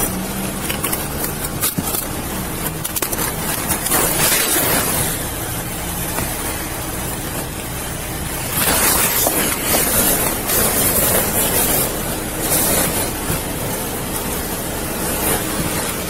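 Rustling and clatter of a fabric bag and loose items being handled during a car search, close to the microphone, over steady background traffic and engine noise. The handling grows louder about four seconds in and again from about eight to thirteen seconds.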